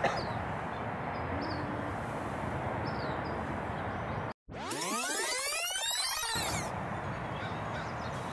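Steady outdoor background noise, broken about halfway through by a split second of silence. Then comes an edited whoosh sweep, rising in pitch for about two seconds, before the background noise returns.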